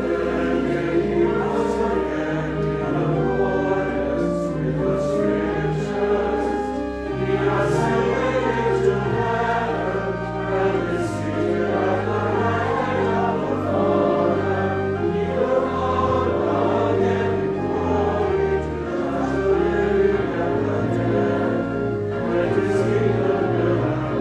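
Choir singing with organ accompaniment, long sustained low bass notes held under the voices and shifting every few seconds.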